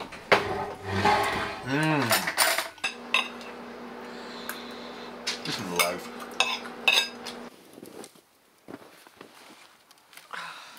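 Forks and knives clicking and scraping on ceramic plates as people eat, in a run of sharp clinks.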